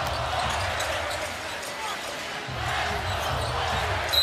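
Steady arena crowd noise under a broadcast, with a basketball being dribbled on the hardwood court.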